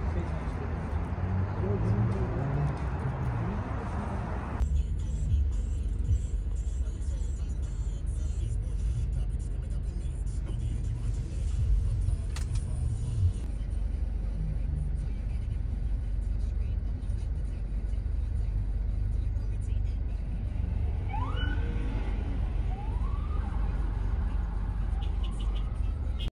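Busy city street traffic, a steady low rumble of passing vehicles. Near the end, an emergency vehicle's siren gives a few short rising whoops.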